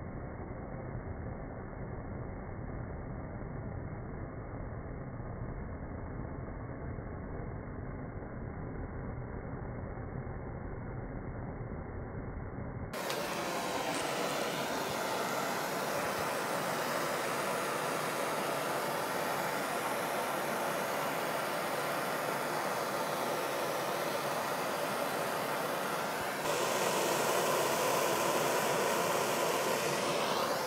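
Blowtorch flame running steadily against a block of dry ice. About 13 seconds in the sound turns abruptly brighter and louder, and its tone shifts again near the end.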